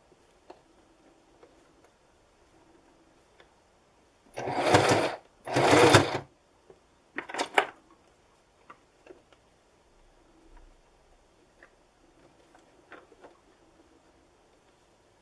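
Electric domestic sewing machine stitching through folded fabric in two runs of about a second each, starting about four seconds in, then a short stuttering burst about a second later. A few faint clicks between the runs.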